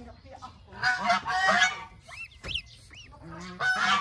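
Loud harsh honking calls from an adult waterfowl, one about a second in and another near the end. Between them come a few short, high, rising-and-falling duckling peeps.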